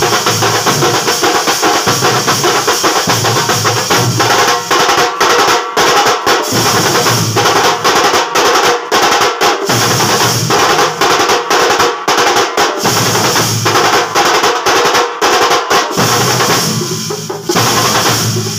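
Thambolam drum band playing: large stick-beaten drums and clashing hand cymbals (ilathalam) in a fast, loud, driving rhythm, thinning briefly near the end.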